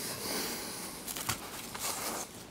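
Cardboard gatefold CD sleeve being handled and opened out, a soft rustling and brushing of card with a couple of light taps in the second half.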